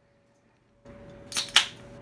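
An 8-ounce aluminium beer can being cracked open by its pull tab: a faint rustle about a second in, then a sharp crack and a short hiss of escaping carbonation near the end.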